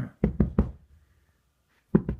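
Four quick, dull knocks in a row within about half a second, close by, with a short burst just before them.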